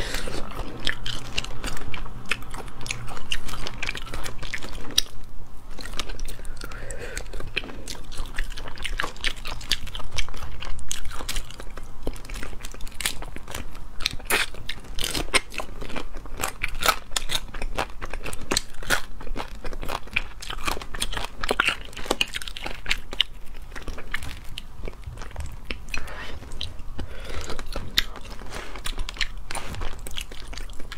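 Close-miked eating of crayfish: steady biting and chewing, with many sharp crunches and cracks of shell all the way through.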